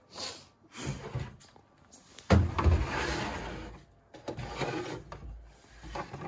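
Handling noise of a portable DVD player and its cable on a wooden shelf: a few soft knocks, then a thump about two seconds in and a scrape lasting a second or so as the player slides across the wood.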